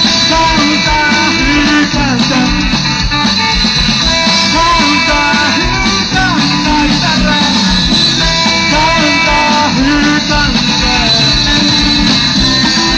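Loud rock music from a band, with guitar and a steady beat, and a melodic line that bends in pitch.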